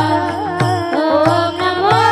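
Women's voices singing a devotional chant together, over pakhawaj drum strokes that keep a steady beat of about two a second.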